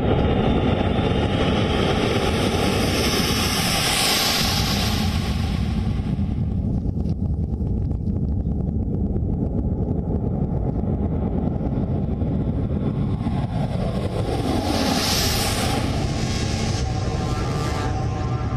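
Four turbofan engines of a C-17 Globemaster III military transport jet running at high power for take-off: a loud, steady roar with a high whine that swells about four seconds in and again near fifteen seconds.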